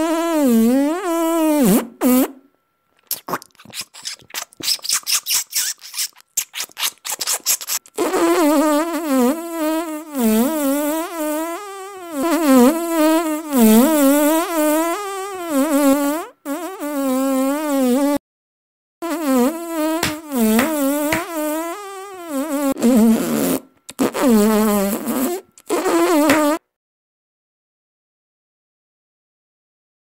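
Cartoon mosquito buzz: a whining buzz whose pitch wavers up and down, coming in stretches with short gaps. Between about three and eight seconds in, it gives way to a run of rapid clicks. It cuts off about a second and a half before the end.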